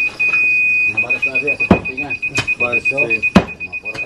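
Laser-level receiver on a grade rod beeping: a steady high tone, then rapid pulsed beeps as it moves off the beam's level, the steady tone marking the rod at grade. Three sharp knocks, the last the loudest, and voices in the background.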